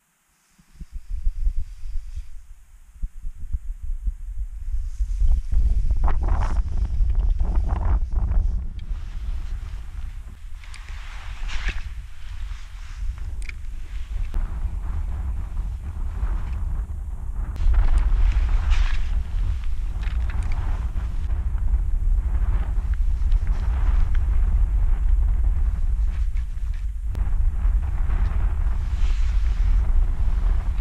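Strong wind buffeting the microphone, a heavy low rumble that builds over the first few seconds and then holds, with scattered small splashes of choppy water.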